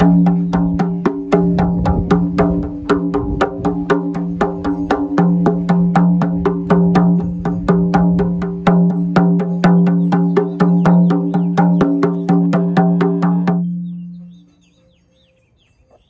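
Rawhide hoop frame drum struck by hand in quick, even strokes, about four a second, each sounding the same low ringing pitch. The hide has been soaked, weighted and dried to stretch it and deepen its tone. The beating stops near the end and the drum rings out.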